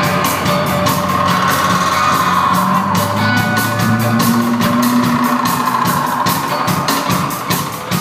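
Live rock band playing: guitar and low sustained notes under a long, wavering high tone, over a steady ticking percussion beat.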